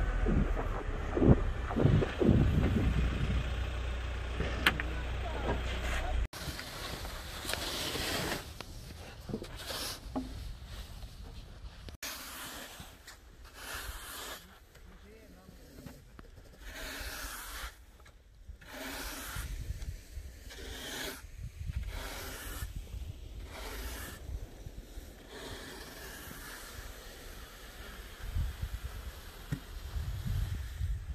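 Vehicle moving slowly with a low rumble for about six seconds. After a sudden cut comes a red plastic snow pusher shovel scraping wet snow off grass, in repeated strokes about once a second.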